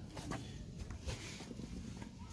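Faint rustling and handling noise as a person kneels on grass beside the scooter and moves the battery wiring: a few soft knocks at the start, then a brief rustle about a second in.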